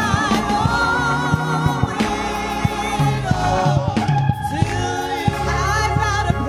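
Gospel music: voices singing with vibrato over a band, with bass notes and regular drum strikes underneath.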